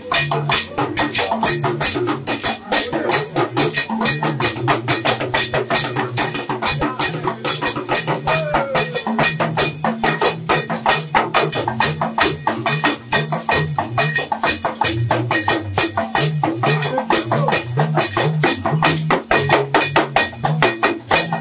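Yoruba talking drums (hourglass dundun drums beaten with curved sticks) playing in a live drum ensemble. Rapid, steady strokes run on throughout, with low drum notes stepping up and down in pitch.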